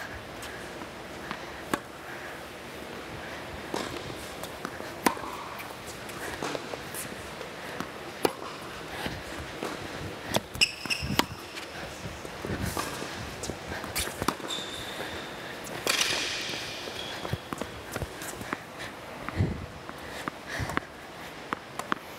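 Tennis rally on an indoor hard court: sharp pops of balls struck by rackets and bouncing, at irregular intervals, with footsteps and a few short high squeals of shoes partway through.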